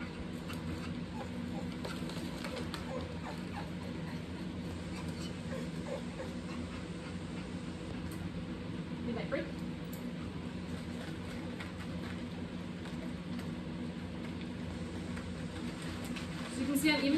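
Steady low hum, with faint scattered clicks and crunches of a dog eating dry kibble from a plate.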